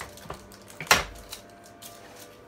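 Steel frame of a COSCO Shifter folding hand truck being folded flat: light clicks and one loud, sharp metal knock about a second in as the frame collapses into its folded position.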